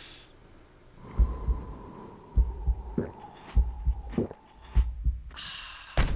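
Heartbeat sound effect: paired low lub-dub thumps about every 1.2 seconds, starting about a second in, over a faint steady tone.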